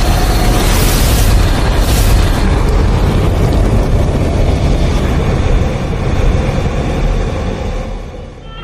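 Logo-intro sound effect: a loud, deep rumbling roar of explosion-like noise that fades away near the end.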